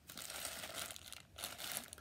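Clear plastic packaging crinkling as a bagged pair of socks is handled, in two stretches of rustling with a short lull a little past the middle.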